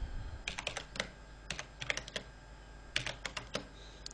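Typing on a computer keyboard: three short bursts of keystrokes, about half a second in, around two seconds in and about three seconds in.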